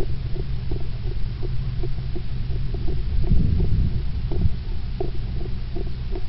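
Runner's body-worn camera jostling with each stride: a steady low rumble of wind and rubbing on the microphone, with footfalls about three times a second. The rumble swells briefly about halfway through.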